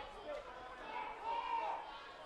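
Arena crowd noise with indistinct distant shouting and voices, swelling slightly around the middle.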